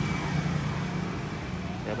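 A motor vehicle engine running steadily with a low, even hum, amid general street noise.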